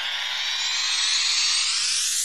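Riser sound effect: a dense cluster of tones gliding steadily upward in pitch and swelling in loudness.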